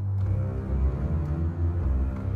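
Software orchestral string basses playing low, held bowed notes from a MIDI keyboard, sounding the track's bass line.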